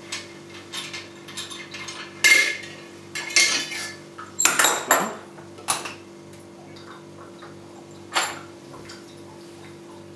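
Copper alembic column clinking and knocking against the copper pot as it is worked loose and lifted off, with a cluster of metallic clanks about two to five seconds in and another single knock near eight seconds.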